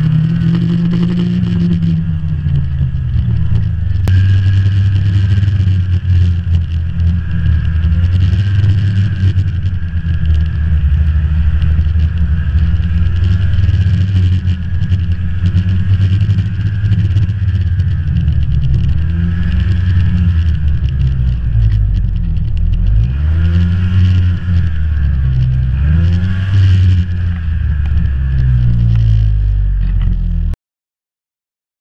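Snowmobile engine running steadily under way, heard from on board behind the windshield. Near the end its pitch dips and rises again a few times as the throttle is eased and opened.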